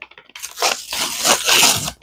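A Big League Chew shredded bubble gum pouch being torn open by hand, a run of ripping and crinkling packaging that starts about a third of a second in.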